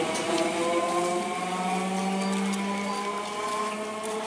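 Eastern Railway EMU local train's electric traction motors whining in several pitches that glide slowly upward as the train picks up speed. A lower hum joins about a second in, and the sound fades a little toward the end.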